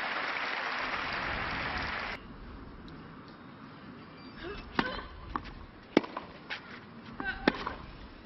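Crowd applause that cuts off abruptly about two seconds in. Then a tennis rally: from about halfway through, a string of sharp racquet strikes on the ball, roughly every half second.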